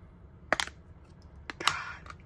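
Hard plastic clicks from a rugged phone case being pried at: a couple of clicks about half a second in, then two more around a second and a half, followed by a short scraping rub. The snap-shut card compartment is stiff and hard to open.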